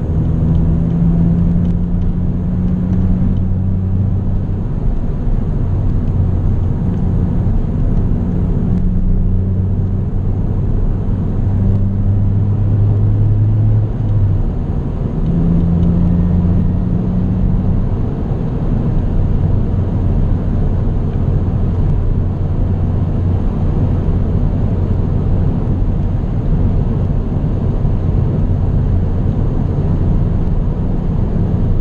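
Cabin sound of a Honda Civic Type R EP3 at a steady cruise: a steady low hum from its four-cylinder engine and HKS exhaust line over road and tyre noise. The note shifts slightly about halfway through.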